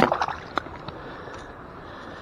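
Steady rush of flowing river water close to the microphone. There is a sharp knock right at the start and a few light ticks in the first half second.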